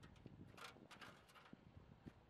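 Near silence with a few faint knocks and clicks: an eight-foot aluminium stepladder being lifted out of an SUV's cargo area and carried.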